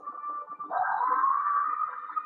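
Film score from the episode: a sustained high tone that swells and glides up about two-thirds of a second in, then holds steady.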